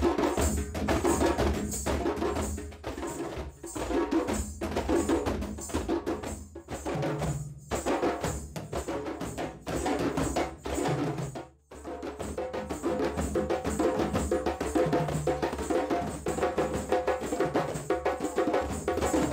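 A djembe ensemble: several djembes played with bare hands over dunun bass drums struck with sticks, keeping a steady, driving interlocking rhythm. The playing breaks off for a moment about two thirds of the way through, then carries on.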